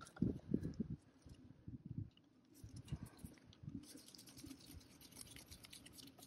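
Hands and a tool working a rubber fuel hose off a diesel fuel filter housing: a few soft knocks in the first second, then faint scraping and clicking, busiest near the end.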